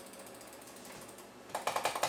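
Rapid, evenly spaced mechanical clicking, about twenty clicks a second, starting about a second and a half in after a faint steady hiss.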